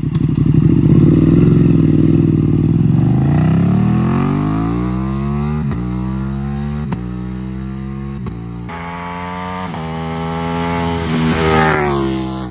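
Ducati Streetfighter V2's 955 cc Superquadro L-twin pulling hard away from a standstill. The engine note climbs, breaks sharply for quick upshifts about six and seven seconds in and again a little later, then climbs once more, loudest near the end.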